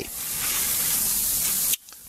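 A loud, steady hiss with no pitch, brightest in the treble, lasting under two seconds and cutting off suddenly.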